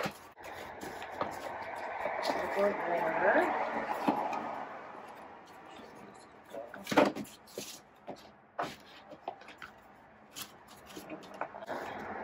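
A dog brush and other small items being set into a woven basket: a sharp knock about seven seconds in and a few lighter clicks and taps after it, over faint background noise that swells and fades in the first few seconds.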